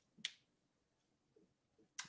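Near silence, broken by one short, sharp click about a quarter of a second in.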